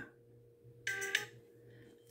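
A short, faint chime from an iPhone 7's speaker, a brief multi-note tone about a second in, as the ringer volume slider is dragged down toward silent: the phone's ringer-volume preview sound. A faint steady hum sits underneath.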